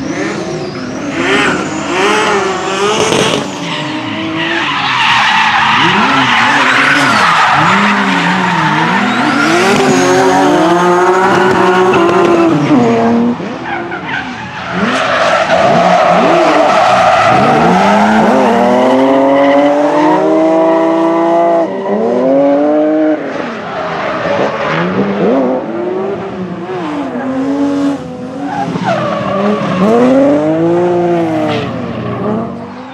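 BMW drift cars' engines revving up and down hard through slides, the pitch rising and falling every second or two, with tyres squealing. Around the middle two cars are heard drifting together, their engine notes overlapping.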